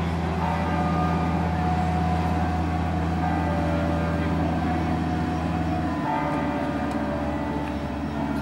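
Steady low drone of a boat engine on the lake, which weakens about six seconds in.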